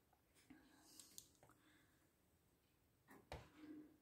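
Near silence: a few faint crackles from a wood fire burning in a closed stove, and a soft thump about three seconds in.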